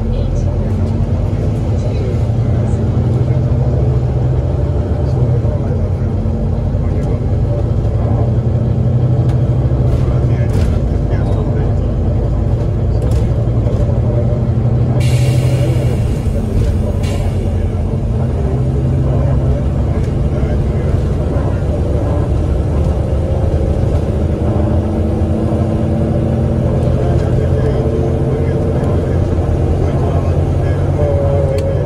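Volvo B9TL double-decker bus's six-cylinder diesel with Voith automatic gearbox, heard from inside the upper deck as the bus drives along. A steady low engine drone whose note climbs near the end as it pulls through a gear, with a brief hiss of air about halfway through.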